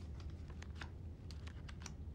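Poker chips clicking together on the table: about eight light, irregular clicks, over a steady low hum.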